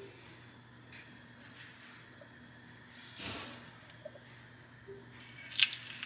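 An egg roll dropped into a pan of hot vegetable oil, giving a brief sharp sizzle just before the end, with soft handling noises before it.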